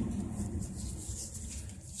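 Gloved hands handling a stack of cardboard 2x2 coin flips, with faint rustling and scraping of card over a low steady hum that fades toward the end.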